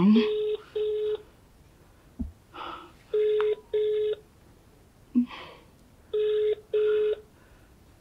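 Telephone ringback tone heard through a mobile phone's earpiece: double rings, two short tones in quick succession, repeating about every three seconds, three pairs in all. The called phone is ringing but nobody picks up.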